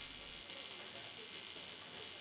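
MIG welding arc on a steel chassis rail, a faint steady hiss.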